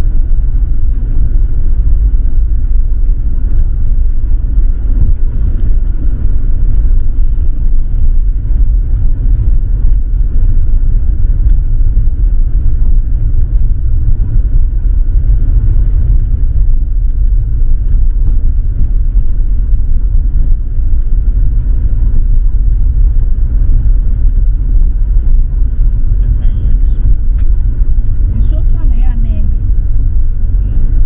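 Steady, loud low rumble of a car driving on a rough unpaved dirt road, heard inside the cabin: tyre and road noise with the engine running.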